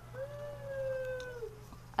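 A domestic animal's single long call, held for over a second and sliding slightly down in pitch, over a steady low electrical hum.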